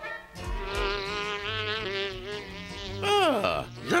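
Cartoon buzzing of a fly, a steady buzz that wavers slightly in pitch. About three seconds in it gives way to a quick falling glide in pitch, then a short rise.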